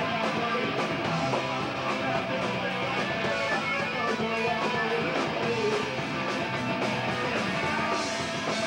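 A live punk rock band playing a song: electric guitars, bass and a drum kit with steady cymbal and drum hits, continuous and unbroken.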